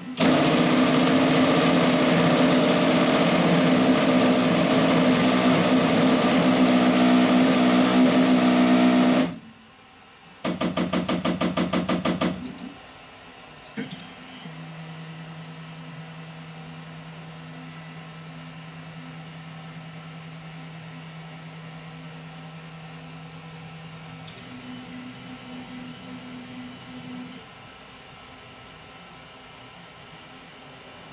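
Raise3D N2 Plus 3D printer making a huge knocking noise: a loud mechanical grinding-knock for about nine seconds, then after a brief pause a fast, even knocking for about two seconds. It then settles to a quieter steady motor hum. The owner hears this knocking as a new fault, just before a print begins and when the machine returns after a print.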